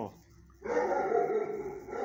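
A dog howling in one drawn-out, steady call lasting about a second and a half, beginning after a brief pause.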